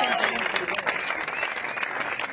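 Audience applauding, with people's voices talking over the clapping.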